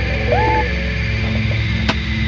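Hip-hop instrumental beat with no vocals: a steady low bass bed, a short pitched figure that slides up and holds about a third of a second in, and a sharp hit near the end.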